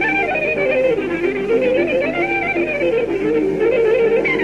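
Old recording of Hungarian Gypsy band music: a lead violin plays fast, flowing csárdás variations that run up and down, over a steady, evenly pulsed accompaniment.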